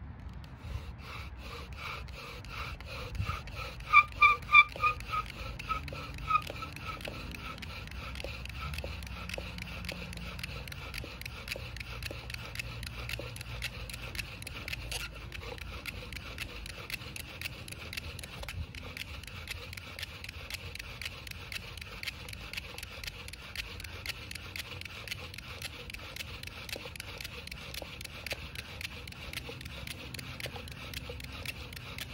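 Bow drill in use: a wooden spindle grinding in a fireboard socket as a paracord-strung bow is stroked back and forth in a steady rhythm, the friction meant to build up an ember. A run of loud squeaks comes about four to six seconds in.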